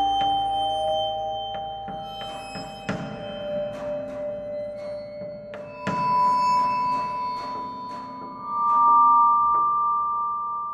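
Slow ambient background music of long, ringing, bell-like mallet notes, a new note struck every few seconds and left to sustain.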